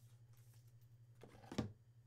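Faint handling of a trading card in a soft plastic sleeve and a rigid plastic toploader: light clicks and one short plastic rustle about a second and a half in, over a low steady hum.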